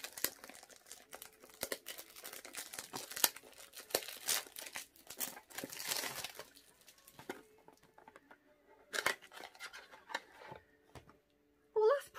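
Crinkling and tearing of a perfume box's packaging as it is unwrapped and opened by hand. The sound is dense for most of the first seven seconds, then comes in two shorter bursts of rustling.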